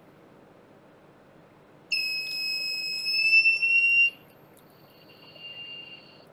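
Electronic buzzer sounding a steady high-pitched tone for about two seconds, then a fainter, shorter tone at the same pitch.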